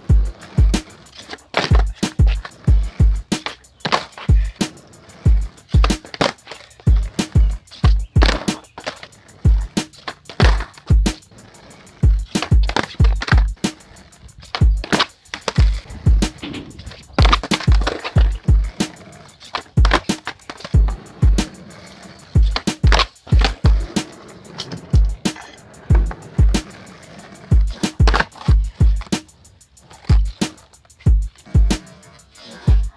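Background music with a steady beat, over skateboard sounds: urethane wheels rolling on asphalt and the board popping and landing during full cab kickflip attempts.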